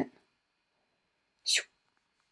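A single short, breathy sound from a person at the microphone, about one and a half seconds in.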